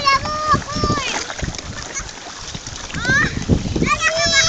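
A toddler's high-pitched voice calling out in the first second and again with rising cries near the end. Between the calls, small wind-driven waves splash against a floating pontoon jetty.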